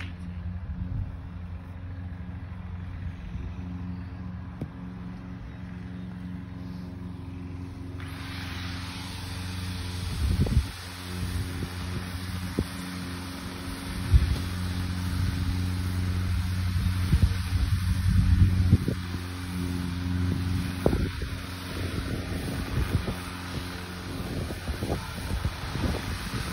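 A steady low motor hum runs in the background, with wind rumbling on the microphone. A few sharp knocks stand out, the loudest about fourteen seconds in, as the batsman plays a shot: a cricket bat striking the ball.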